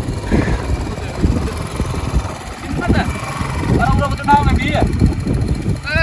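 Indistinct voices over a steady low rumble, with a short burst of talk near the end.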